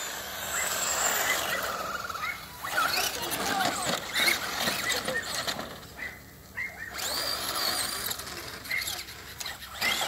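Radio-controlled trucks' motors whining as they are driven, rising and falling in pitch as they speed up and slow. It goes quieter briefly about six seconds in.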